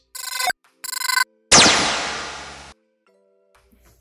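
Edited-in electronic sound effect: two short bright ringtone-like chimes, then a loud crash-like burst that fades over about a second and cuts off suddenly.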